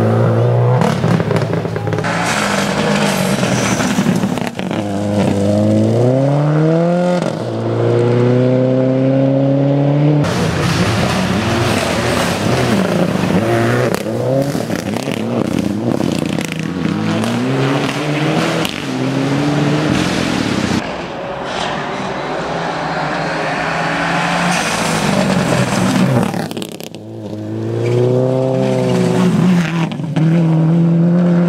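Rally cars at full throttle on gravel stages, engines repeatedly revving up and dropping back through gear changes, with loose gravel and dirt noise under the tyres. There are abrupt changes between passes, one at about ten seconds and another near the end.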